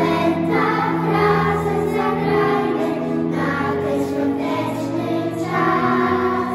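Children's choir singing a Christmas song in unison, over sustained instrumental accompaniment.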